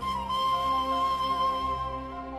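Pan flute playing one long held high note, bending slightly at its start, over a soft sustained orchestral accompaniment.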